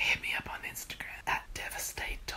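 A man whispering, the words not made out.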